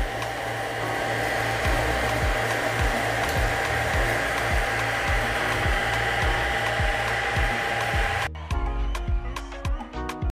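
Steady blower-like whooshing with a thin steady whine and low hum from a high-power DC-DC boost converter test bench, over background music with a beat; the machine noise cuts off suddenly about eight seconds in, leaving the music alone.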